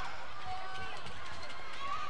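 Steady gymnasium ambience of a children's basketball game in play: players' running footsteps on the court and faint, distant voices in the hall.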